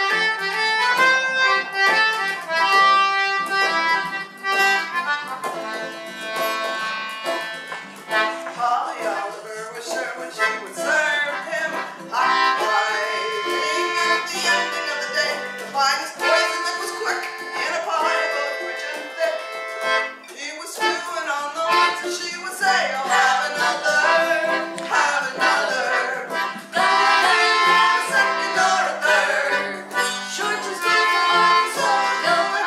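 Instrumental intro by a small folk band: a concertina carrying the tune over strummed acoustic guitar, starting right at the beginning and playing on without a break.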